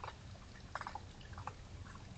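Raccoons feeding at close range: small crunching clicks of chewing, with a quick cluster a little under a second in, over a faint low hum.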